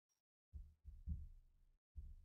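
Near silence in a pause between spoken sentences, with a few faint, low, soft thuds about half a second and a second in.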